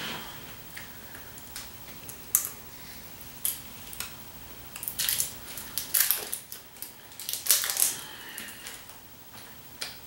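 Small plastic paint bottles, caps and cups handled with nitrile-gloved hands: scattered clicks and crinkly rustles, with a busier run of handling noise between about five and eight seconds in.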